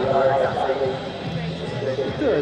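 Indistinct talking from people close by, loudest in the first half-second.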